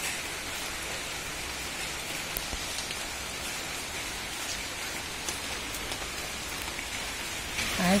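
Steady rain falling: an even hiss with scattered drip ticks.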